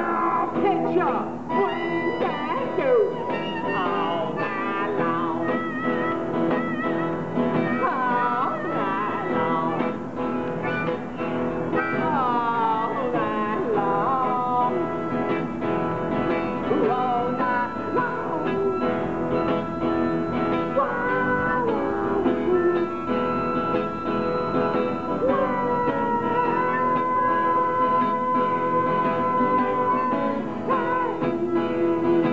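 Blues harmonica playing bent and long-held notes over a strummed acoustic guitar, with a long held note near the end.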